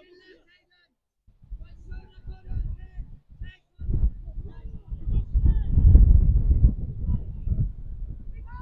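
Wind buffeting the phone's microphone in a low, uneven rumble that starts about a second in and is loudest about five to seven seconds in. Faint shouts from players carry over it.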